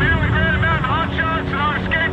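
A man's voice coming over a two-way radio, thin and lacking low tones, broken into short phrases, over a steady low rumble.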